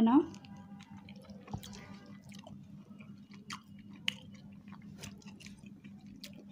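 Two people chewing pizza with soft, scattered mouth clicks and smacks as they eat.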